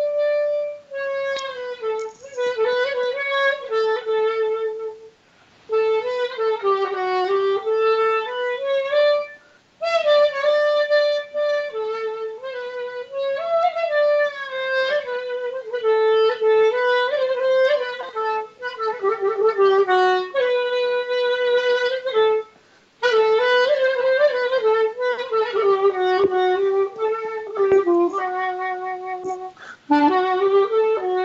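Unaccompanied clarinet playing a melody, a single line with sliding, bending notes, in long phrases broken by short breath pauses.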